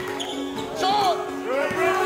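Hip-hop song playing, a rapped vocal over a beat with a steady held synth tone.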